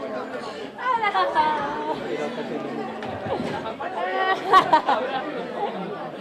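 Chatter of several people talking at once in greeting, with higher, louder voices rising out of it about four to five seconds in.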